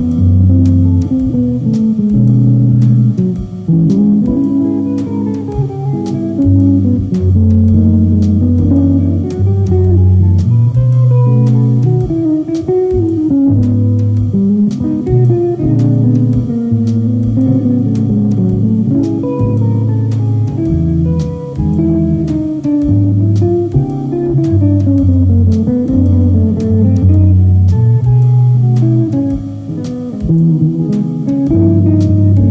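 Archtop electric jazz guitar playing, moving melody lines and chords over held low bass notes.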